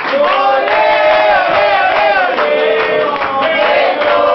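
A high voice singing into a microphone over a PA, in long held notes that slide up and down.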